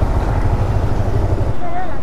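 Motorcycle riding slowly through city traffic: a low rumble that drops away about one and a half seconds in.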